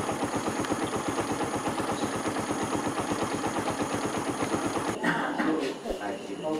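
An engine or similar machine running steadily with a rapid, even pulse, which stops about five seconds in, when voices begin.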